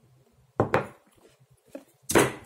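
A sharp knock of a hard object set down on a desk, about half a second in, followed by a lighter knock near the end.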